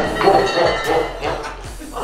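Background music with a steady beat, and a metal teapot clinking on a tiled floor after falling through a collapsed cardboard table.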